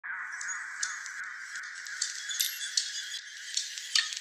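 A muffled ambient sample: a dense, fluttering mid-pitched texture with scattered sharp clicks, the band fading out shortly before the end.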